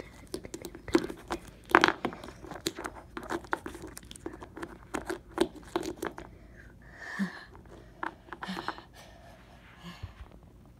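Plastic toy horse figurines being handled close to the microphone: a quick, irregular run of light clicks, taps and rubbing as fingers grip them and knock them together, with two sharper knocks early on.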